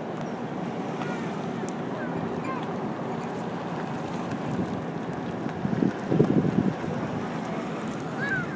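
Patrol cars in a slow procession driving past close by, a steady sound of engines and tyres on the road. Wind buffets the microphone in gusts about six seconds in.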